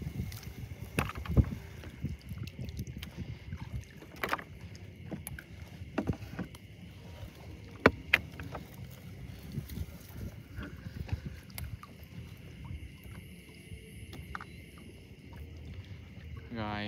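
Small boat moving through a flooded field: water sloshing and plants brushing against the hull, with scattered sharp knocks and clicks as the boat and the snails plucked from the plants are handled.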